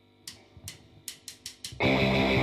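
Opening of a punk rock recording: six cymbal strikes coming quicker and quicker, then the full band with electric guitars comes in loudly near the end.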